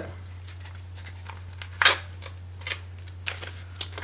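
Small package being opened by hand: a few short crackles and tears of wrapping, the loudest about two seconds in, over a steady low hum.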